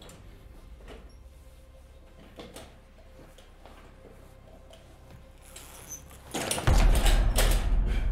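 Faint shuffling and small knocks of a man moving on a tiled floor beside a wheelchair, then about six seconds in a sudden loud crash with a deep rumble as he falls to the floor.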